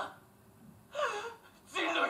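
Voices with a pause: a pleading word cut off at the start, nearly a second of near silence, a short gasping voice with falling pitch about a second in, then speech resuming near the end.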